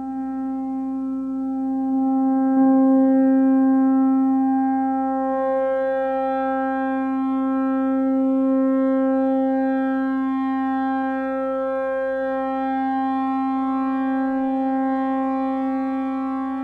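Electronic synthesizer music: a single low tone held steady, with higher overtones gradually filling in above it and swelling slowly in loudness.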